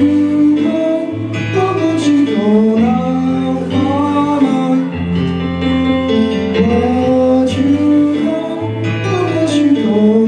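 Live song performance: sustained accompaniment with low bass notes changing every second or two under a gliding melody line.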